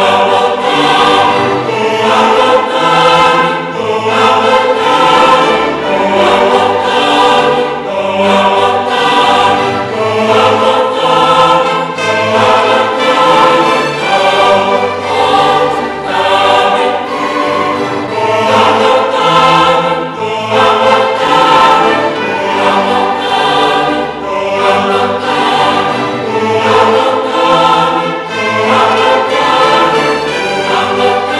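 A choir singing with a string orchestra accompanying, in continuous phrases a couple of seconds long.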